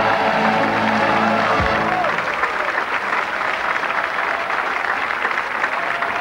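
A band plays a held final chord of a dance number, which ends about two seconds in. Studio audience applause follows.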